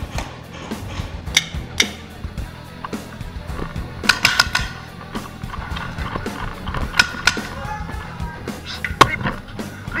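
Paintball markers firing in several sharp, scattered shots, with clattering movement, over background music.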